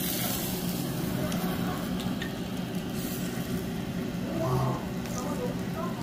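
Beef grilling over charcoal: a steady sizzle and hiss over a low hum, with faint ticks and brief voices about four and a half seconds in.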